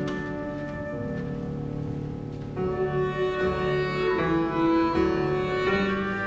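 Clarinet, flute and piano playing an instrumental piece together in long held notes. The music grows louder about two and a half seconds in.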